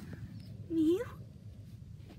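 A person's short, high, cat-like mew, imitating a kitten for the plush toy, about a second in; its pitch dips and then rises.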